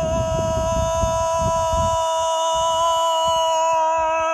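A woman's voice holding one long, steady, high-pitched wordless note, the noise made as a channeling act. There is a low rumble of wind on the microphone, heaviest in the first half.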